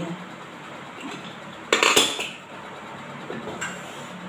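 Steel pots and utensils clattering as they are handled on a kitchen counter: one loud clatter about two seconds in, and a lighter clink near the end.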